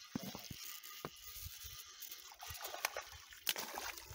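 Water splashing as a hooked rainbow trout thrashes at the surface while it is reeled in to the shore, with scattered sharp clicks and splashes.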